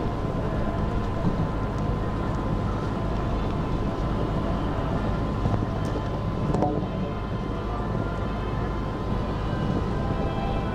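Steady low rumbling background noise with a faint, steady high-pitched tone running through it, and a single brief knock about two-thirds of the way in.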